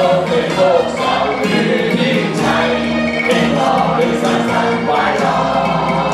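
A group of people singing together along with band music, led by a man's voice on a microphone.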